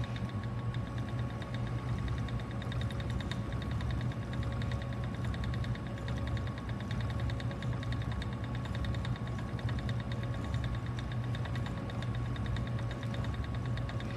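Ashford Elizabeth II treadle spinning wheel running steadily while plying yarn, the wheel and flyer turning with a low steady whir and a rapid, even fine ticking.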